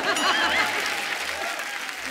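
Studio audience applauding, with a few voices cheering at the start. The applause thins out through the two seconds.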